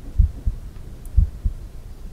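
Heart sounds as heard through a stethoscope diaphragm over the aortic area, with the breath held after breathing out: a steady lub-dub, two low thuds close together about once a second.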